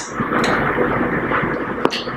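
A folder being handled close to the microphone: a steady rustle, with a faint click about half a second in and another near the end.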